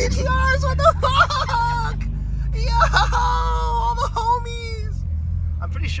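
A voice singing long, wavering held notes in two phrases, over the steady low hum of a car driving.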